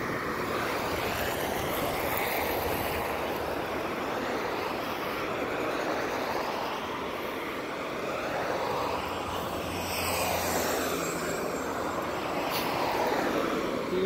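Road traffic passing close by: a steady rush of tyres and engines that swells and fades slowly as cars go past.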